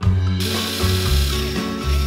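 Background music with a steady bass beat starts, and from about half a second in, a drill bit bores into wood as a steady hissing noise over the music.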